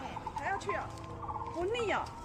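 Several people's voices talking over one another: a murmur of overlapping chatter with no single clear speaker.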